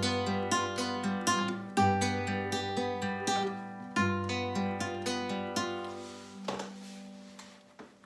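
Fingerpicked classical guitar playing a broken-chord exercise, several plucks a second over a bass note that changes about every two seconds, moving between G major and G7. The picking stops about six and a half seconds in with a brief scratchy stroke, and the last chord fades out.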